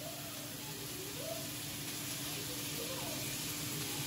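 Steady hiss of food sizzling in a frying pan on the stove.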